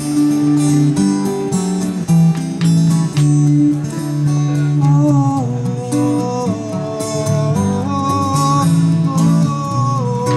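Two acoustic guitars playing together: steady strummed chords, with a higher melody line that steps up and down coming in about halfway.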